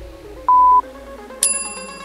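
Interval timer countdown: a short steady beep about half a second in, the last of a series spaced about a second apart. Just under a second later a brighter ringing chime marks the start of the work interval, over fading electronic music with a falling sweep.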